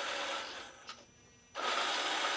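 Electric drivetrain of a 1/10-scale all-metal 8x8 RC military truck whirring with its wheels spinning off the ground; it winds down about half a second in, a short click follows, and after a brief silence it whirs up again abruptly. The stop is to switch the differentials from unlocked to locked.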